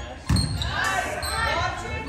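A single hard thump of a volleyball about a third of a second in, echoing through the gym, followed by girls' high voices shouting out on the court.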